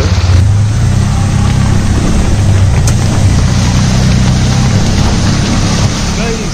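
Auto-rickshaw engine running steadily while driving, heard from inside the open cabin, with a steady hiss of heavy rain and wet road underneath.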